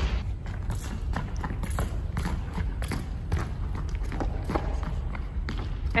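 Scattered light thuds of a soccer ball and sneakers on a wooden gym floor, over a low steady rumble.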